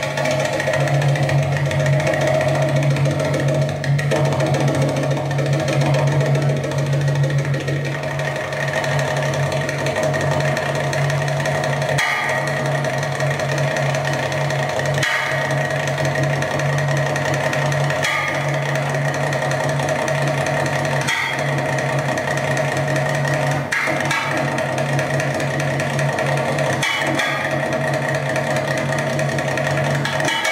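Darbuka (Middle Eastern goblet drum) solo playing continuously, with a steady low hum under it and strong accents about every three seconds.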